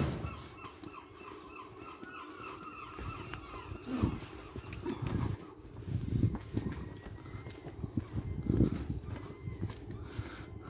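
Gulls calling: a quick run of short, repeated high calls through the first half, then fading. Low thuds of footsteps on the pavement come through in the second half, and there is one sharp click at the very start.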